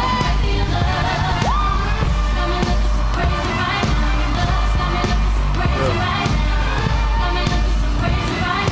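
Live pop concert audio: a sung vocal over a heavy, steady bass beat, from a stage performance with singers and dancers.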